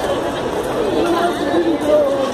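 Several people chattering, voices overlapping, with a light crowd murmur behind.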